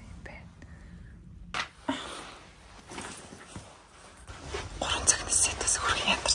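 Soft whispered voice: breathy, unvoiced speech sounds, louder near the end.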